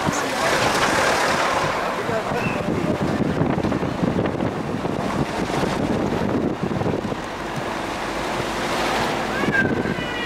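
Steady rushing road and wind noise heard from inside a moving car, with wind buffeting the microphone.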